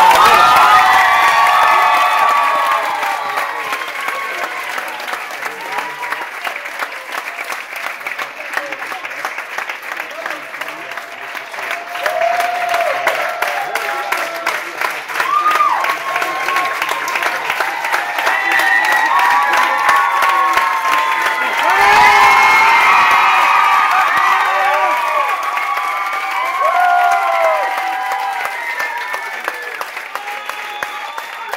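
A crowd clapping and cheering, with shouts over the applause. It is loudest right at the start, dies down somewhat, and swells again about two-thirds of the way through.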